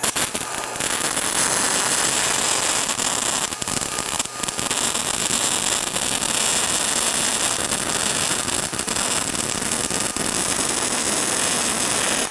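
Spray-transfer MIG welding arc from an ESAB Rebel 235 at about 27 volts and 290 amps, 395 inches a minute wire feed, 95% argon/5% oxygen shielding gas, running a fillet weld on 3/8-inch steel plate: a steady hiss with crackle running through it, starting abruptly and cutting off at the end. The crackle is what the welder takes for an arc length that might be just barely short.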